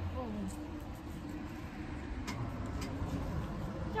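Leafy green plants rustling as they are picked by hand, with a few faint crisp snaps of stems in the second half, over a steady low outdoor rumble.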